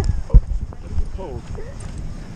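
Tandem skydivers landing and sliding to a stop on grass, with a sharp thump about a third of a second in over a low wind rumble on the microphone. A short faint exclamation follows near the middle.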